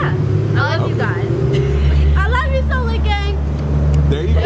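A road vehicle's engine running close by in street traffic: a steady low hum that grows louder through the second half, with a woman's voice over it in short stretches.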